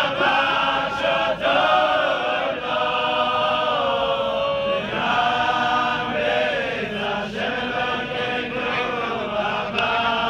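A group of men singing together unaccompanied: a slow, chant-like song with long held notes.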